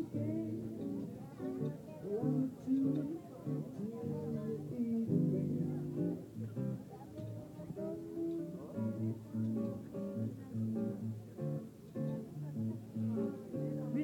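Music with a plucked guitar, a string of held notes changing in pitch.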